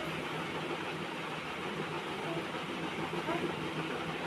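Steady machine hum with no distinct events.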